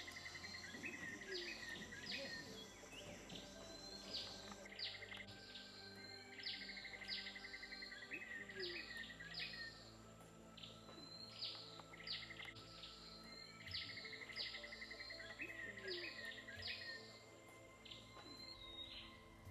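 Birds calling: short falling whistles repeated several times a second in runs, with buzzy trills of a second or two between them.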